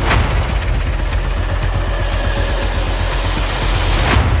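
A loud, steady low rumble with hiss over it, opened and closed by a sharp hit.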